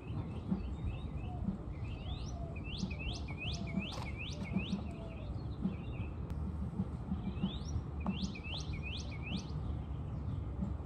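A songbird singing two phrases of quickly repeated, upward-sweeping whistled notes, the first about two seconds in and the second near the end, over a steady low outdoor rumble.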